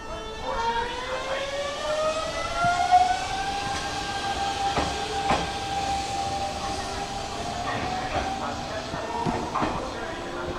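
Hanshin 5500-series electric train pulling away, its inverter-driven traction motors whining in several tones that rise in pitch over the first three to four seconds and then hold steady. A few sharp clicks come through about five seconds in and again near the end.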